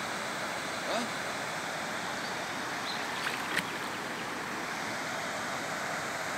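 Steady rush of muddy floodwater flowing over a flooded road, with a few faint short high sounds about a second in and again around three and a half seconds.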